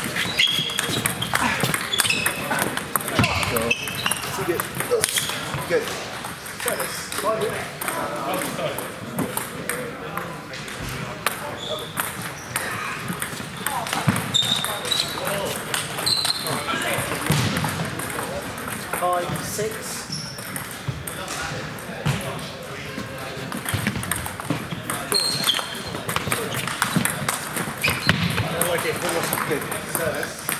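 Table tennis balls clicking off bats and tables in rallies, at this and neighbouring tables, amid the chatter of voices in the hall.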